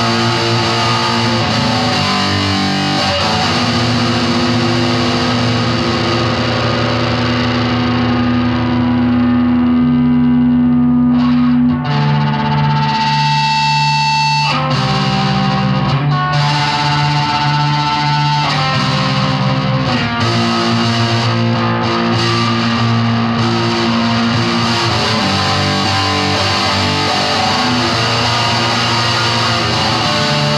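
Electric guitar played through distortion and effects, holding long, dense chords. The sound grows steadily duller over several seconds, a cleaner held note rings briefly near the middle, and then the full distorted sound comes back.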